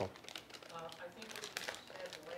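Faint, distant voice of an audience member asking a question, heard off-microphone, with soft clicks and rustling nearer by.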